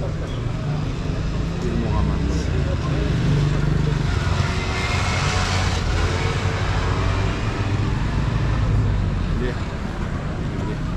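Outdoor street noise: a steady low rumble, with a louder swell of hiss about five seconds in, like traffic going by.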